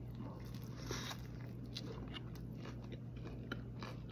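A man biting into a burger and chewing it: faint, scattered soft crunches and mouth clicks over a low steady hum.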